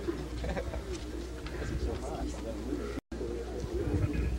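Low murmur of a seated outdoor crowd's chatter over a steady low hum. The sound cuts out completely for an instant about three seconds in.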